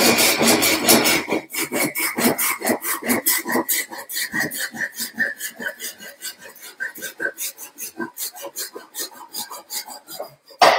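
Japanese saw cutting through a bamboo tube held in a vise, in quick back-and-forth strokes. The strokes are dense at first, then separate into about four a second and grow quieter toward the end. Under the strokes a faint ringing note slowly drops in pitch.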